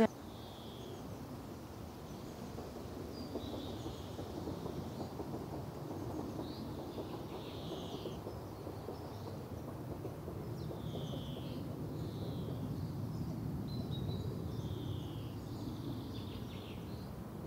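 Recorded outdoor birdsong: scattered short bird chirps over a steady low rumble of outdoor ambience, cutting in abruptly in place of the room's voices. It is the nature recording that replaces the live audio to mute the housemates' conversation.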